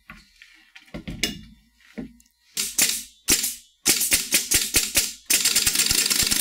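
Pneumatic action of a Sweeney Special Effects capsule launcher cycling as air pressure is slowly brought up: a knock about a second in, a few separate sharp hissing clicks, then a fast run of clicks over a steady rush of air for the last part.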